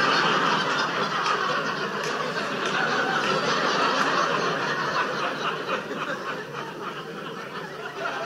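Stand-up comedy audience laughing together at a punchline, steadily at first and tapering off near the end.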